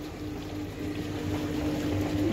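Pork loins frying in oil in a pot, a faint sizzle under a steady low hum.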